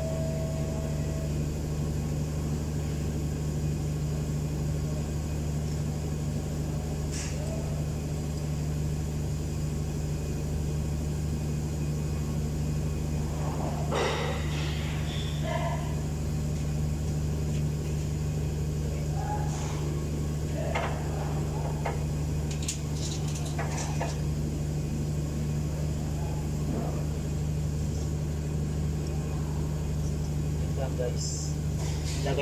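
A steady, low machine hum, with a few scattered clicks and some faint voices in the middle.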